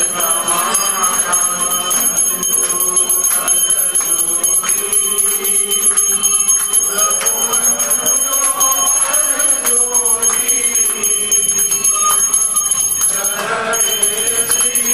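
Temple hand bells ringing rapidly and without pause for an aarti, with a group of voices singing the aarti underneath.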